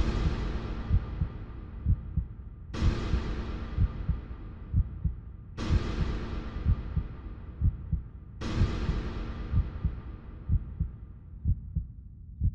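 Suspense score: low heartbeat thumps run under a series of reverberant hits that strike and fade out four times, about every three seconds.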